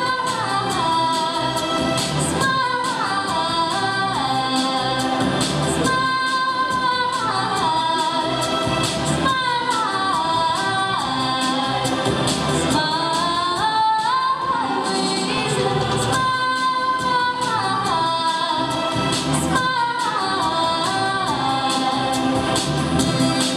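A young girl singing a song into a microphone, amplified over an instrumental backing with steady percussion.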